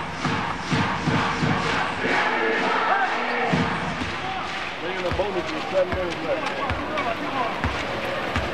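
Arena crowd noise with fans chanting, then, about five seconds in, a basketball bounced on the hardwood court four times, under a second apart, as the shooter readies a free throw.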